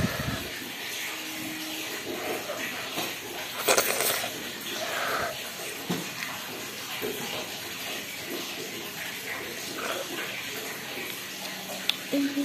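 Someone eating pasta with a metal spoon: faint eating and spoon sounds over a steady background hiss, with a short loud rush of noise about four seconds in.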